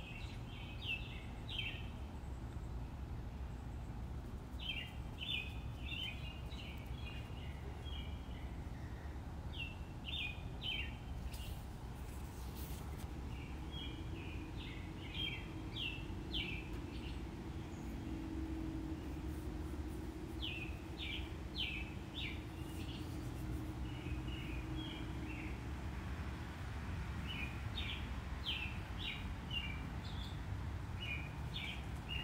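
A bird singing short phrases of quick high chirps, a phrase every few seconds, over a steady low room hum.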